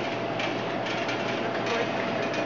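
Steady machine hum and hiss, with a faint constant tone and a few light clicks in the middle: the background noise of a grocery store with a running seafood tank.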